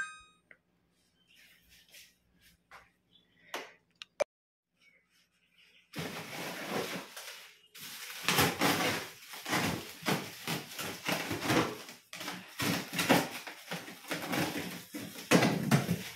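Plastic-bagged packs of frozen meat rustling, crinkling and knocking as they are handled and lifted out of a fridge's freezer compartment. The first few seconds are near silent apart from a few faint clicks; the dense crinkling and knocking starts about six seconds in and carries on.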